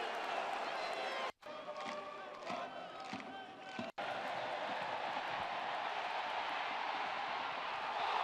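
Football stadium crowd noise, a steady hum of the crowd. It is cut off abruptly twice, about a second and a half in and about four seconds in, and between the cuts it is quieter with faint shouting voices.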